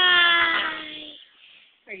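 A long, drawn-out vocal call, held for about a second and a half and slowly falling in pitch.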